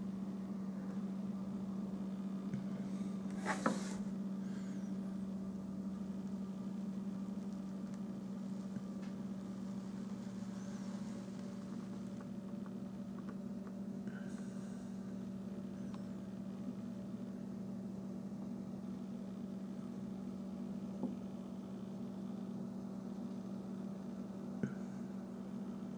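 Steady low hum of room tone, one even pitch with faint overtones. There is a short rustle about three and a half seconds in and a faint click near the end.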